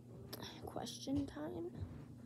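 Quiet, indistinct speech from a boy, a few murmured words.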